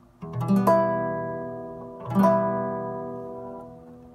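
Classical guitar strumming an E minor chord across all six strings, twice, with each slow strum ringing out and fading over about two seconds.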